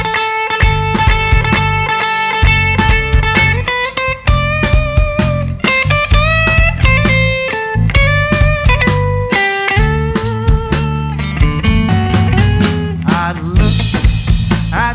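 Blues-rock band playing an instrumental intro: a lead guitar holds notes and bends them up and down over a steady drum kit and bass.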